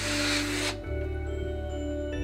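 Soft background music with steady, sustained low notes. A burst of hiss sounds over it at the start and cuts off suddenly within the first second.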